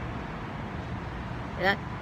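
Steady hum of distant road traffic, with a short spoken syllable from a woman near the end.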